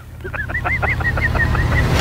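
Reel-to-reel tape spooling at high speed, the recorded voice chattering as a rapid run of high-pitched chirps, about ten in a second and a half, over a low rumble.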